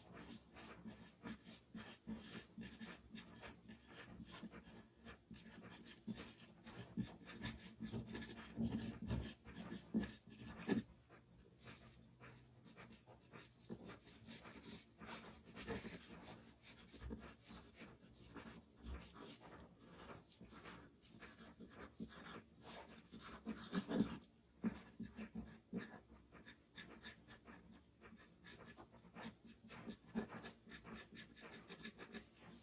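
Charcoal pencil scratching on drawing paper in many short, quick strokes, some louder than others.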